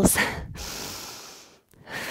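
A woman breathing hard through an exercise round: one long breath that fades out over about a second and a half, a brief pause, then the next breath starting near the end.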